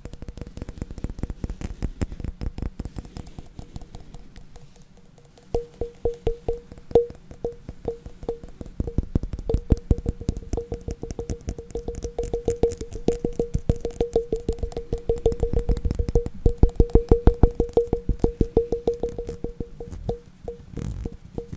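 Layered fast tapping on hard objects, many taps a second. About five seconds in, after a short lull, the taps start to ring with one steady pitch and grow louder.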